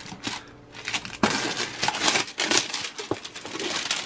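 Clear cellophane shrink wrap being peeled and pulled off a cardboard model kit box: a dense run of small crinkles and crackles, quieter for most of the first second and then fuller.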